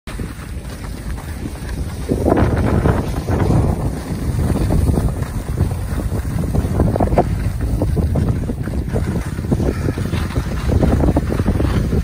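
Wind buffeting the microphone of a camera carried by a skier moving downhill, a steady loud rumble, with the hiss and scrape of skis sliding over groomed snow.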